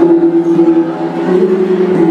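Mường bronze gong ensemble (cồng chiêng) playing: several gongs of different pitches struck with beaters, their low ringing tones overlapping and changing pitch about halfway through and near the end.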